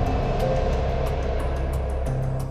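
A steady, noisy rumbling drone with a low hum under it, a dramatic sound effect laid over the edit.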